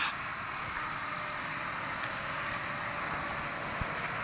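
Steady background hiss with a faint, thin high whine and no distinct events.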